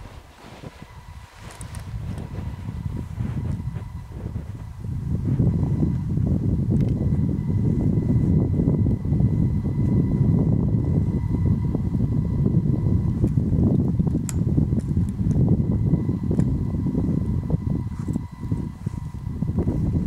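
Wind buffeting the microphone: a rough, low rumble that builds over the first few seconds and then stays loud.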